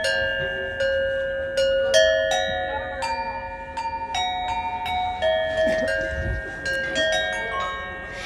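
A tuned set of Gujarati copper bells standing in a row on wooden stands, struck one after another with a wooden mallet to play a melody. Each note rings on with several overtones and overlaps the next, at about two strikes a second.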